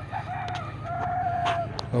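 A rooster crowing: a few short notes, then one long held note that ends shortly before the close.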